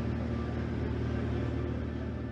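A steady low rumble with a faint hum, from a ship underway on the water.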